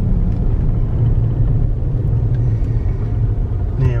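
Steady low rumble of a car's engine and tyres heard from inside the cabin while it drives slowly.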